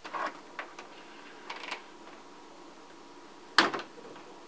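Several light clicks and knocks from objects being handled, then one sharp, much louder clack about three and a half seconds in.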